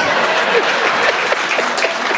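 Audience applause in a hall: a steady patter of many hands clapping that eases slightly toward the end.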